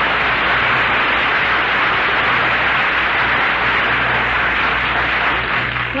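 Studio audience applauding, a steady wash of clapping heard through an old radio recording with a low hum beneath it. The applause gives way just as a man begins speaking.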